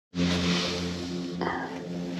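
A steady motor hum with a rushing hiss over it.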